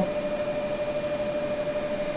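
Steady fan or air-handling hum and hiss, with a faint steady tone that fades out partway through.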